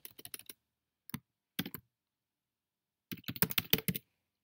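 Computer keyboard typing: a quick run of keystrokes, then a couple of single key taps, a pause of over a second, and another fast run of keystrokes near the end.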